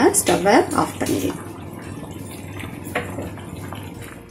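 A voice speaks briefly at the start, then a clay pot of thin mutton gravy bubbles at a steady rolling boil, with small scattered pops.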